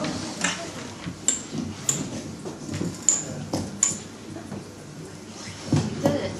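Scattered light knocks and clicks, with four brief high clinks, over a low room murmur.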